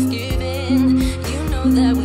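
Background pop music with a steady beat.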